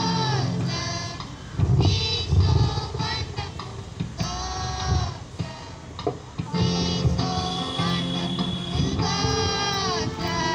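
School choir of children singing a prayer song in phrases with short breaths between them.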